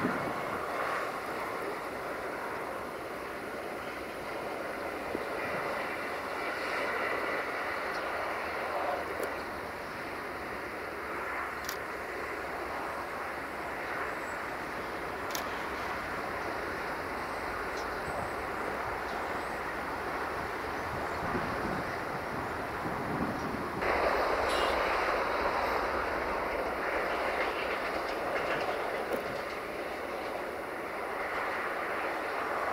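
Passenger train running along the track, with wheel and rail noise that gets louder about six seconds before the end.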